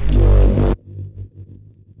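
Electronic music: a loud, deep bass chord cuts off abruptly under a second in, leaving a low rumbling tail that fades away.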